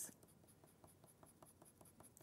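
Faint scratching of a watercolour pencil shading on card in quick, short back-and-forth strokes, several a second.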